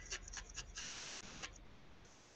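Faint handling of a needle-felted wool figure: a few light ticks from the felting needle tool and a brief scratchy rustle of wool and fingers a little under a second in.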